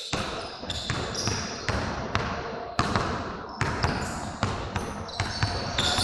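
A rapid, irregular series of sharp knocks and thumps, several a second, with voices in the background.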